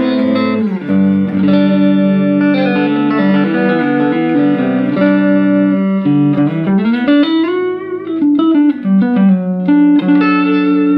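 Electric guitar played with a Rombo pick made of recycled fibre material: a single-note lead line of sustained, ringing notes. Near the end one note is bent slowly up and back down.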